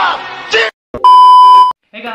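An edited-in bleep: one steady, very loud beep of a single high pitch, the standard censor-bleep tone, lasting about two-thirds of a second and starting about a second in. Before it, a reel's speech over music cuts off abruptly.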